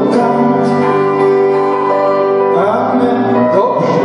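Live music: a carol played on acoustic guitar, violin and keyboard, with held chords that change about two and a half seconds in.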